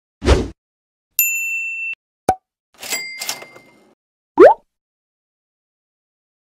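A run of short editing sound effects for an animated title: a low thump, a steady high beep lasting under a second, a sharp click, a brief chiming rattle, and a quick rising bloop near the end.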